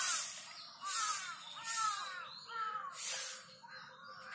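Birds calling outdoors: short, harsh calls repeated about every three-quarters of a second, each with a surge of high hiss.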